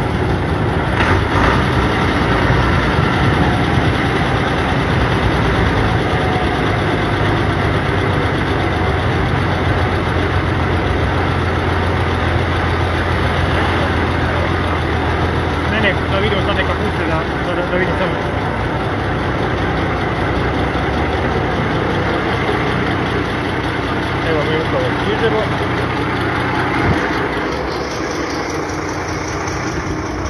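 A tractor engine runs steadily while driving along a road, heard from on board. Its low drone is strongest in the first half and eases off after about halfway.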